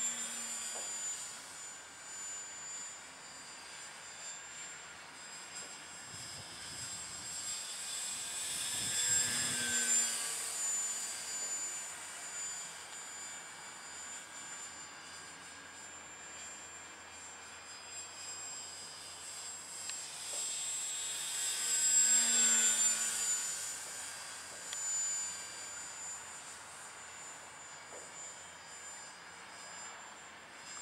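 Radio-controlled scale model Boeing P-26A Peashooter flying overhead, its motor and propeller giving a steady high whine. The whine swells louder twice as the plane passes closer, about nine seconds in and again about twenty-two seconds in.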